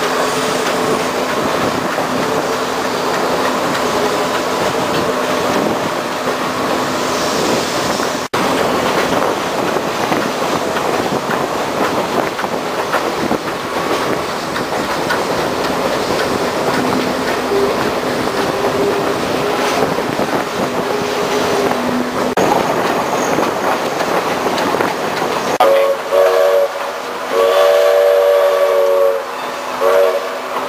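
Steam excursion train rolling along the track, a steady clatter and rumble of wheels and cars heard from an open car. Near the end the steam locomotive's whistle blows twice, a short blast then a longer one, several tones sounding together as a chord.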